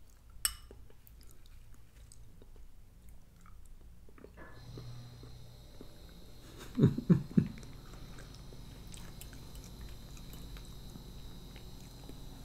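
A man chewing a mouthful of chunky canned soup with meat pieces and vegetables, close to the microphone. A metal spoon clinks against the ceramic bowl about half a second in, and three short, loud low sounds come about seven seconds in. A faint steady hum with a thin high whine sets in partway through.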